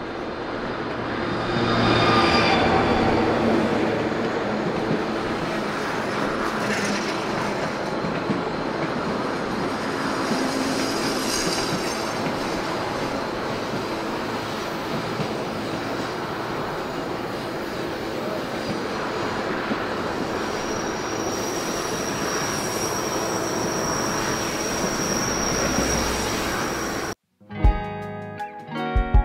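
Narrow-gauge White Pass & Yukon Route passenger train heard from on board while moving: a steady rumble of wheels on rail, with high-pitched wheel squeal as it rounds curves, a burst about two seconds in and a thin steady squeal near the end. The sound cuts off abruptly just before the end.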